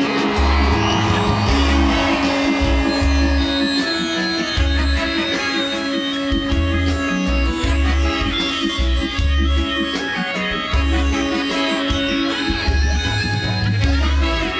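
Live reggae band playing, with a bass line repeating in regular blocks and a melodica playing a melody over it.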